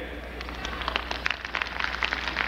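Audience applauding, a dense patter of scattered hand claps that fills in about half a second in.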